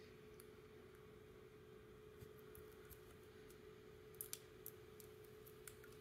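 Near silence with a faint steady hum and a few faint, scattered small clicks, a couple close together about four seconds in, as fingers squeeze a miniature toy milk carton.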